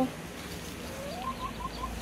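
A bird calling: one rising note, then four quick short notes.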